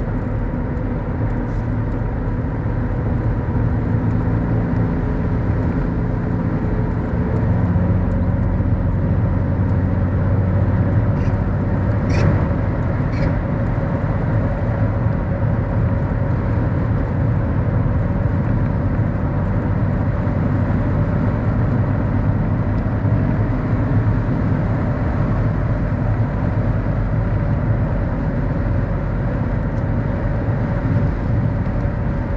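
Mercedes-Benz W124 driving at a steady cruise, heard from inside the cabin: an even engine hum under tyre and road noise. A few faint ticks come around the middle.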